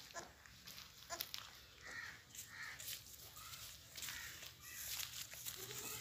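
Goat kids moving on straw-covered dirt, with a few light clicks and rustles of small hooves, then several faint, short, high-pitched calls from about two seconds in.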